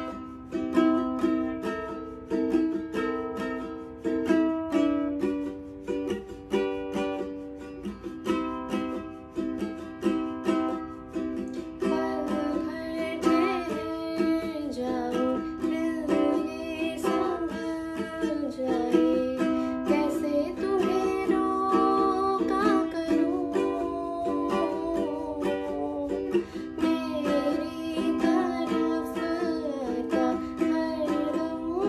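Ukulele strummed in steady chords that change every couple of seconds; about twelve seconds in a woman's voice starts singing the song's melody along with the strumming.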